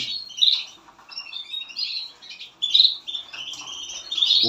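Caged finches calling in short, high chirps: a loud one about half a second in, a run of them through the middle, and another loud burst a little before three seconds.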